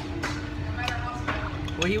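Diner room tone: a steady low hum under a general murmur, with a few light clicks. A voice starts speaking near the end.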